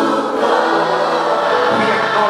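A large congregation singing together in a gospel song, many voices loud and steady, with long held notes.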